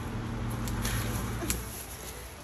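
Branches and leaves rustling as fruit is picked by hand from a tree, with a couple of light clicks, over a steady low hum that fades out near the end.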